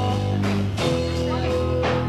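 Live rock band playing: held electric guitar chords over bass and drums, moving to a new chord just under a second in, with a drum hit near the end.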